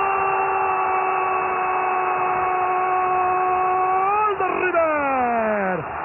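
An Argentine football commentator's drawn-out goal cry, 'Gol', held as one long shout on a steady pitch for about four seconds, then sliding down in pitch and dying away near the end.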